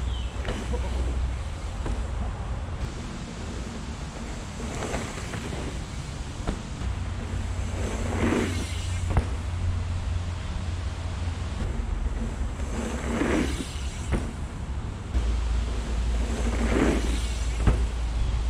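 A hardtail mountain bike's tyres rolling over packed-dirt jumps, in four brief swells as the rider passes, over a steady low rumble of wind on the microphone.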